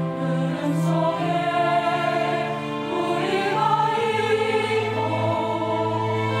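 A mixed church choir of women and men singing an anthem in sustained chords. A long low note comes in under the harmony about four seconds in.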